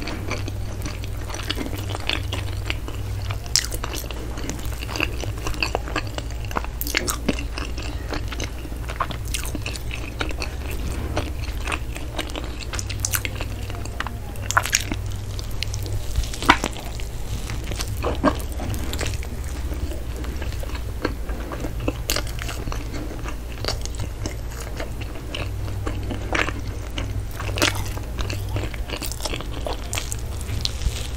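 Close-miked mouth sounds of eating soft bread: bites and chewing with irregular wet smacks and clicks, over a steady low hum.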